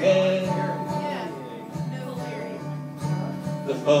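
Acoustic guitar strummed as accompaniment in a slow country song, with no singing. A chord rings out and fades, and fresh strums come in near the end.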